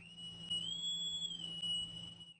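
Short electronic transition sound effect: a steady high synthesized tone that bends up in pitch about half a second in and settles back down near the end, over a low hum and faint hiss.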